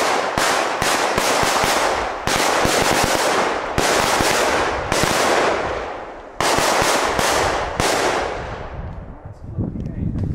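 A ring of firecrackers, a heksenkring, going off in rapid chain succession. It makes a dense, continuous crackle of sharp bangs, with fresh surges every second or so, that thins out near the end.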